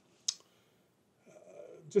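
A pause in a man's talk: one sharp short click a quarter second in, then a soft breath from a little past the middle until his voice comes back at the very end.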